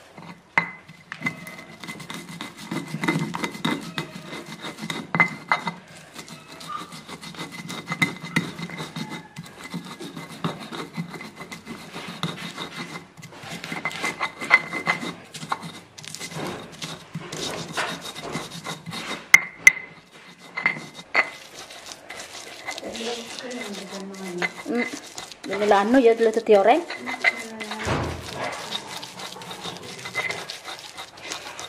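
Stone pestle (ulekan) crushing and grinding garlic, shallots, candlenuts and coriander seed against a stone mortar (cobek): a run of irregular knocks and gritty rubbing as the spices are ground into a paste. A short voice comes in near the end.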